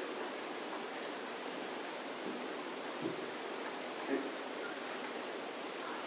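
Steady faint hiss of room tone, with two faint brief ticks about three and four seconds in.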